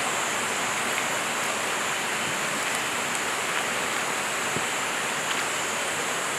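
Steady rush of flowing river water around a wooden dugout canoe being paddled, an even noise with a constant high hiss above it.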